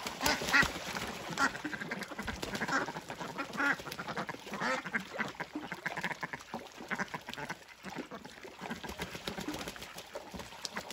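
A flock of domestic ducks quacking repeatedly, several birds calling one after another.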